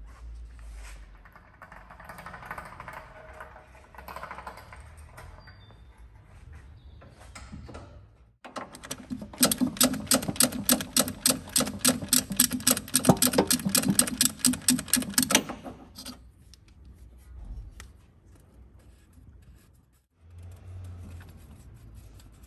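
Ratchet tool clicking rapidly and without a break for about seven seconds, starting about eight seconds in, as fasteners are worked for the automatic transmission's oil filter change. Fainter clatter of tools and parts being handled comes before and after it.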